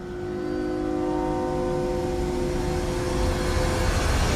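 A sustained chord of the background score: several steady tones held together for almost four seconds, with one higher tone entering about a second in, cutting off just before the next line.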